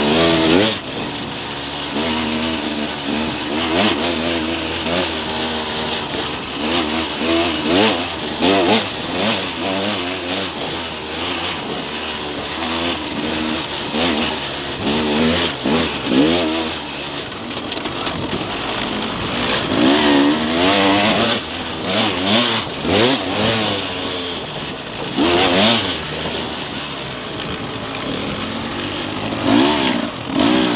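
Dirt bike engine revving up and down over and over as the rider works the throttle along a trail, heard close from the bike, with a steady rush of wind and road noise.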